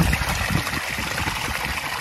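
Water from a pump-fed backyard garden waterfall running steadily over rocks and pebbles in a lined stream bed.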